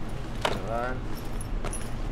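Handling noise as shopping bags and a small box are rummaged through: rustling with a few sharp clicks and knocks, and a short vocal sound about half a second in.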